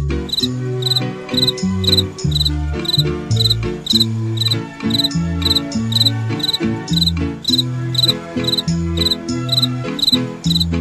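Cricket chirping steadily, about two short trilled chirps a second, over instrumental music with a low line of notes changing every half second.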